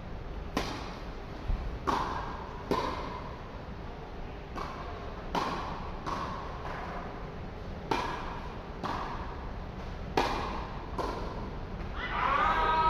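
Tennis ball struck by rackets in a serve-and-volley rally: a sharp hit about half a second in from the serve, then about ten sharp hits in all, roughly a second apart. Each hit rings briefly in the echoing steel-roofed hall.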